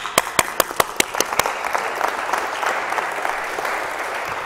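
Audience applauding: separate claps in the first second or so fill out into dense, steady applause that eases off slightly near the end.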